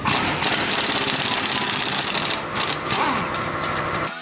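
An impact wrench hammering rapidly as it spins the nut off a strut-to-steering-knuckle bolt, the bolt head held with a spanner.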